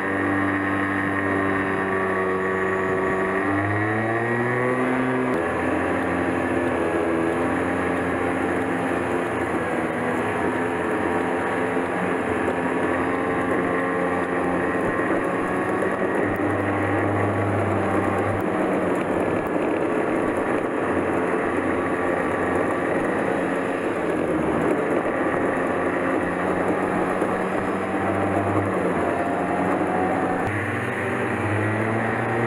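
Go-kart engine running under the rider, its pitch climbing and dropping again and again with the throttle, over a steady rush of road and wind noise.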